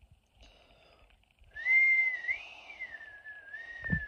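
A person whistling one long note that starts about one and a half seconds in, wavers up and then settles slightly lower, and holds.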